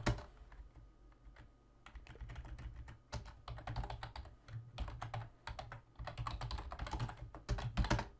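Typing on a computer keyboard: runs of quick keystrokes separated by short pauses.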